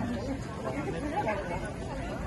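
Indistinct chatter of several people talking among the street crowd, no words clearly standing out.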